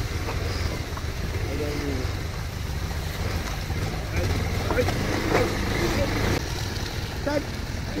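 Motorcycle engine running steadily while riding, a low rumble throughout, with faint voices over it.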